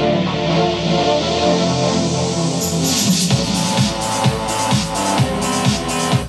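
A progressive house track playing back in full: a four-on-the-floor kick drum about twice a second under sustained synth pad chords. A white-noise swell effect comes up in the high end about halfway through, half buried in the mix.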